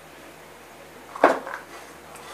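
A short metallic clatter about a second in, then a lighter knock: tools being handled on a workbench as a hand-held dent puller is picked up.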